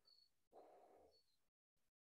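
Near silence: faint room tone, with one soft, brief noise about half a second in.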